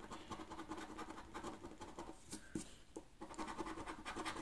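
A coin scratching the coating off a paper scratch card in quick, faint strokes, with a short pause about three seconds in.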